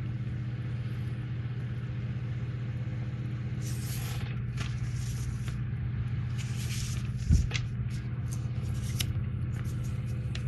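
Paper rustling in a few short bursts as a printed instruction booklet is handled, with one soft thump a little past the middle, over a steady low hum.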